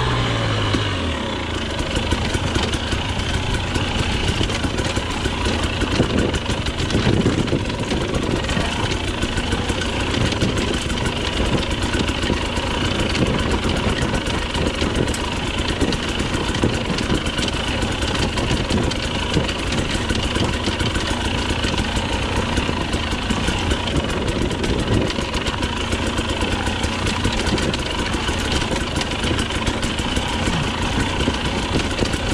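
Onboard sound of a Husqvarna TE250i 250 cc two-stroke single-cylinder enduro bike. The revs fall off in the first second, then the engine runs at low, fairly even revs on rough ground, with frequent knocks and rattles from the bike.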